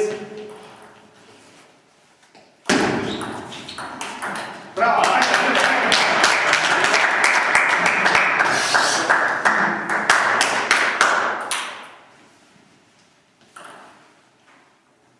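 Table tennis ball clicking off bats and the table during a rally, over loud shouting voices that start suddenly, swell, then die away before the end. A single ball bounce comes near the end.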